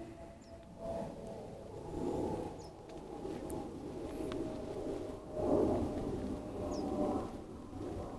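Faint outdoor background noise that swells and fades, with a few short, high chirps scattered through it.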